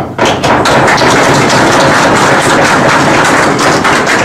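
Audience applauding: a dense patter of many hands clapping starts abruptly and keeps on at a steady loud level.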